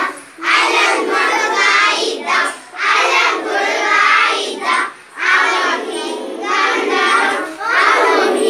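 A group of young children singing a Kannada song together, loud and half-shouted, in short phrases with brief breaths between lines.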